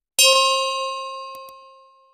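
Notification-bell sound effect: one bright struck-bell ding that rings and fades away over about two seconds, with two quick clicks about a second and a half in.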